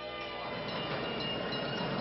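A streetcar running by on its rails: a steady rumbling noise with faint steady tones over it.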